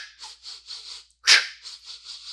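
A man doing rapid fractional breathing: sets of four quick, short sniffs in through the nose, each set ending in one sharp exhalation, with a sharp breath out about a second and a half in. It is an emergency recovery breathing drill, a deliberate hyperventilation meant to clear carbon dioxide after hard effort.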